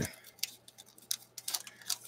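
Scattered light clicks and taps of hard plastic model-kit parts being handled and pressed together, irregular and a few to the second.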